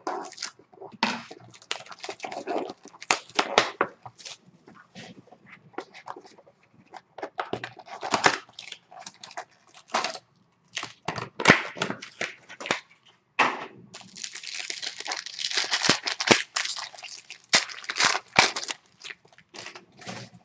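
A sealed box of hockey cards being unwrapped and opened by hand: irregular tearing and crinkling of plastic wrap and rustling cardboard. The noise comes in short bursts, then runs thick for several seconds in the second half.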